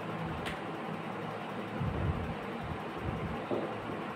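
Faint scratching of a marker writing on a whiteboard over steady low room noise, with a single click about half a second in and a low rumble from about two seconds in.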